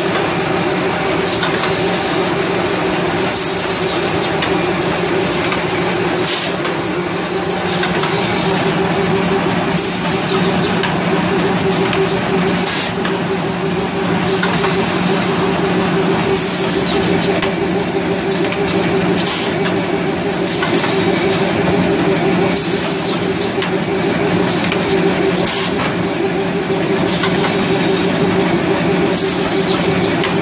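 Napkin tissue plastic-bag packing machine running with a steady hum, working through a repeating cycle about every six and a half seconds: a sharp click, then a few seconds later a short, high, falling squeal.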